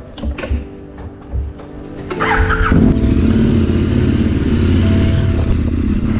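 KTM 1290 Super Adventure R's V-twin engine started about two seconds in: a brief crank, then it catches and settles into a steady idle.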